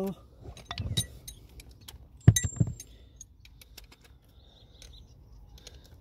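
Metal hand tools clinking and knocking as a socket extension bar is picked up and fitted, with one sharp ringing metallic clink a little after two seconds in.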